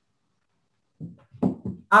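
Silence for about a second, then a man's voice speaking a few words.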